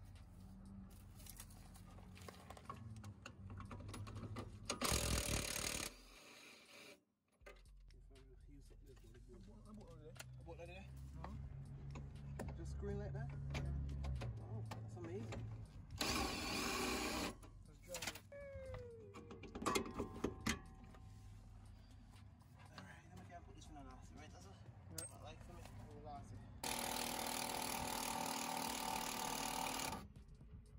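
Cordless impact wrench with a long extension running in steady bursts of one to three seconds, about five seconds in, about sixteen seconds in, and again near the end, working the bolts of a car's rear coilover. Clicks and knocks of tools and parts between the bursts.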